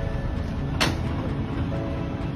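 Steady rumble of street traffic, with one sharp thud a little under a second in as a sack is dropped onto the road surface.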